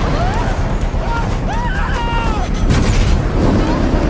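Action-film soundtrack mix: a constant rush of wind, with falling people crying out in short yells that swoop up and down in pitch, and music underneath.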